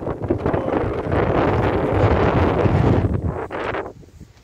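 Wind buffeting the microphone: a loud, steady rushing rumble that drops away just before the end.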